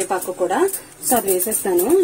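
Speech: a woman talking in Telugu.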